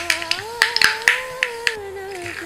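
Mustard seeds spluttering in hot oil: about ten sharp, irregular pops in two seconds.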